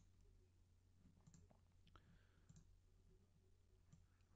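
Near silence: room tone with a few faint computer mouse clicks.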